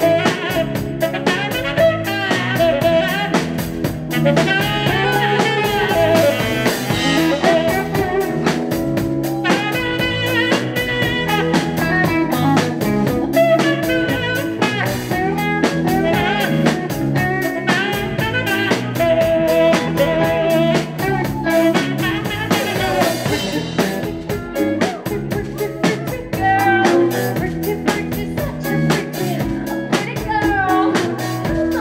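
Live rock band playing, with a tenor saxophone taking a melodic solo over drum kit and electric guitars.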